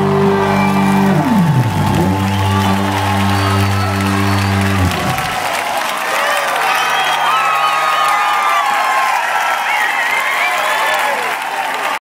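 A live rock band holds a final sustained chord, with a sliding drop in pitch about a second in, then rings out until it stops about five seconds in. A concert crowd then cheers and applauds, with shouts and whistles.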